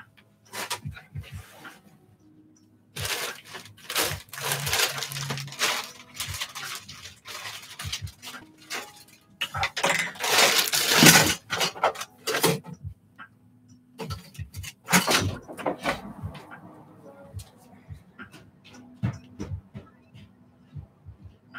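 Objects clattering and rustling as they are handled off camera, as when someone rummages through art supplies. The sounds come in several bursts of clicks and knocks, the loudest a little after the third second, around the tenth to twelfth seconds and near the fifteenth.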